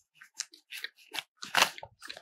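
Backpack fabric and stretchy mesh side pouch rustling and scrunching as a water bottle is worked into the pocket and the pocket is pressed down: a run of short crinkly rustles, the loudest about a second and a half in.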